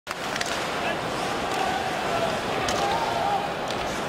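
Ice hockey arena crowd noise, a steady murmur with some voices, broken by a few sharp clacks of sticks and puck on the ice.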